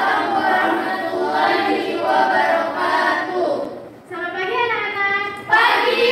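A class of female students reciting together in unison, in long sing-song phrases with short breaks between them.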